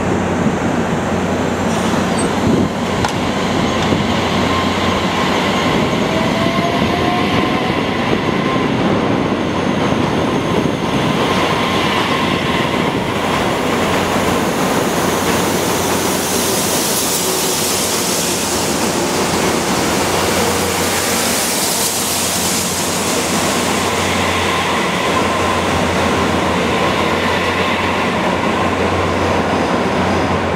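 Korail O-Train electric multiple unit pulling out of the station and running past: a rising whine a few seconds in as it gets moving, then wheel-on-rail noise that grows loudest while the cars go by and eases as the last of the train passes.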